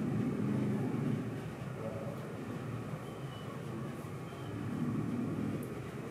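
A marker writing on a whiteboard, with a couple of faint short squeaks, over a steady low rumble that swells at the start and again near the end.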